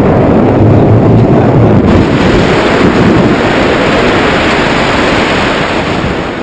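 Loud, steady wind buffeting the camera microphone during a tandem parachute descent under an open canopy.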